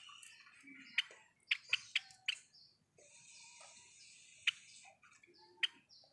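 Java sparrow chirping: a run of short, sharp chip notes, several close together in the first couple of seconds and a few more spaced out later.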